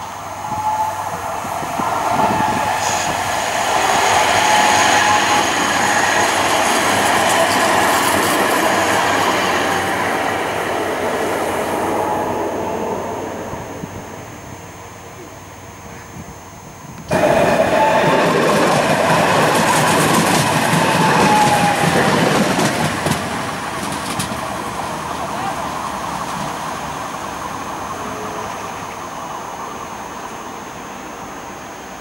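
Alstom Citadis Dualis electric tram-train running past on the rails, loud for about ten seconds with a faint wavering whine, then dying away. About 17 seconds in, the sound cuts suddenly to another tram-train pass, loud for several seconds and then fading.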